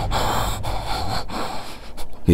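A man breathing heavily, about three hard breaths in a row.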